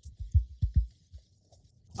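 A few soft, low thumps at uneven intervals in the first second, then quiet.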